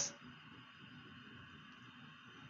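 Faint, steady hiss of a gas stove burner flame running at full gas under a pot of water.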